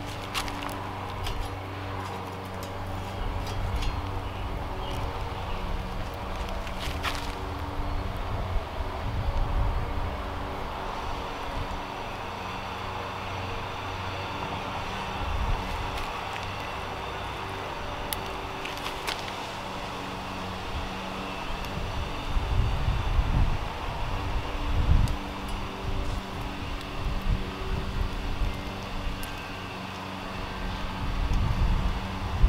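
Wind buffeting the microphone over a steady low hum, with a few short scratches of matches being struck, about seven seconds in and again around nineteen seconds.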